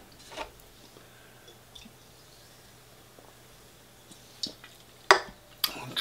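Faint mouth sounds of a man holding a too-hot mouthful of chilli and rice and shifting it around before swallowing: mostly quiet, with a few soft wet clicks and a sharper smack about five seconds in.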